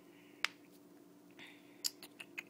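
Two faint, sharp clicks about a second and a half apart over a low steady hum.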